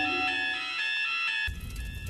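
Electronic fire alarm sounder, alternating between two tones about twice a second.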